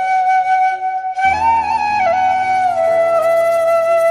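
Background music: a solo flute playing a slow melody of long held notes with small slides between them. A low accompaniment comes in about a second in.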